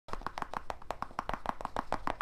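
Rapid finger tapping close to the microphone: an even run of sharp taps, about seven or eight a second.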